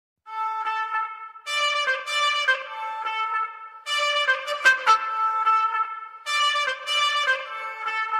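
Background music led by trumpets, playing short melodic phrases that come in about every two and a half seconds.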